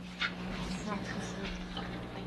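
Steady low electrical hum with faint, indistinct voices, a short sharp sound about a quarter second in and a brief wavering squeak just under a second in.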